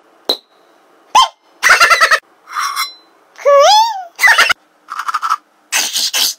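A man's voice making a string of short comic noises and squeals, one swooping up and back down in pitch about three and a half seconds in.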